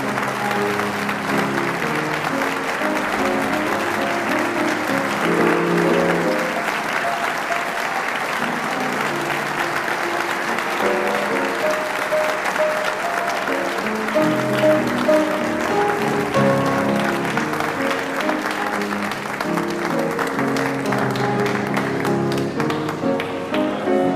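Audience applauding over piano music. The applause dies away near the end, leaving the piano playing on its own.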